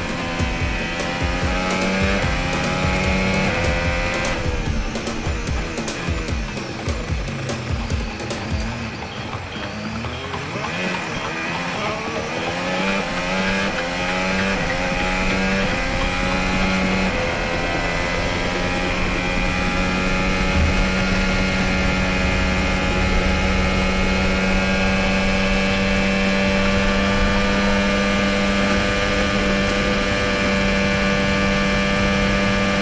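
Onboard sound of a Red Bull Formula 1 car's turbocharged V6 hybrid engine. The pitch falls for several seconds as the car brakes and shifts down, then climbs through the gears and holds at high revs for the second half.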